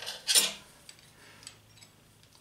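Metal hand tools clinking against a steel work table: one short clatter about half a second in, then a couple of faint ticks.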